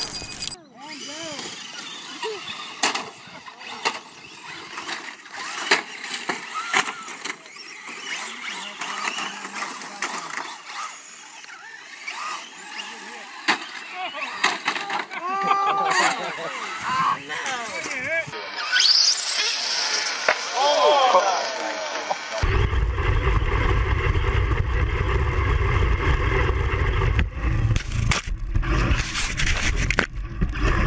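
Voices and scattered knocks and clatter from small RC cars crashing. About two-thirds of the way in this gives way to the steady, loud drone of a racing lawn mower's engine, heard from an onboard camera.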